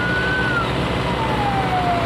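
Fire engine siren wailing: a high tone holds and climbs slightly, then a slow glide falls away in pitch, over a steady background rumble.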